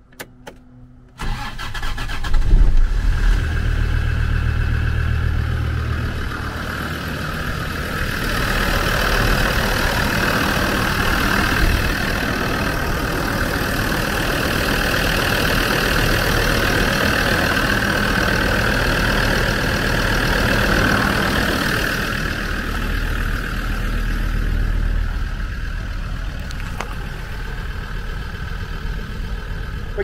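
Land Rover Td5 2.5-litre five-cylinder turbodiesel starting from cold: it fires about a second in with a brief loud flare, then settles into a steady idle.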